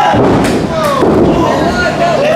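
Thud of a wrestler's body landing on the wrestling ring mat, with voices shouting over it.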